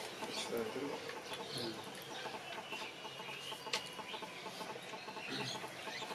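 Quiet room tone with faint distant sounds and a few soft clicks, including a thin steady tone about halfway through.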